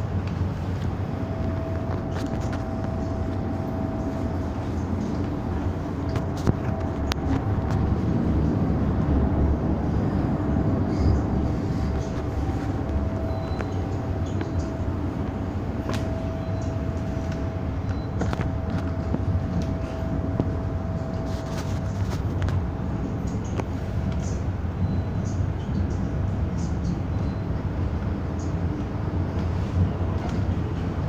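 Interior of an MTR M-Train electric multiple unit running between stations: a steady low rumble of wheels and running gear, heaviest about a third of the way in, with a thin steady whine that comes and goes and scattered clicks and knocks from the carriage.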